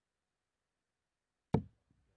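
A steel-tip dart hits a Winmau bristle dartboard as one sharp knock about a second and a half in, after clipping the flight of a dart already in the board.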